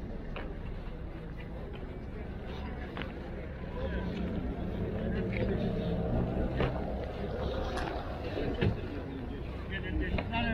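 Steady low wind rumble on the microphone, with faint voices of people in the background and a few scattered clicks.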